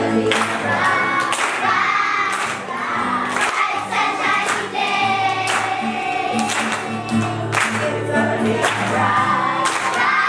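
Children's choir singing a song together with accompaniment, over sustained low notes and a steady beat.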